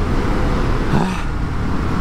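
Indian FTR 1200 S Race Replica's V-twin engine with Akrapovič exhaust, running steadily at cruising speed of about 90 km/h, heard on board mixed with wind and road noise.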